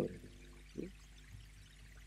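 Room tone with a steady low electrical hum, under a brief spoken "¿Sí?" a little under a second in.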